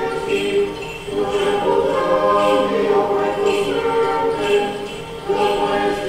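A choir singing Orthodox Vespers chant a cappella in sustained chords. One phrase fades a little before five seconds in, and the next begins just after.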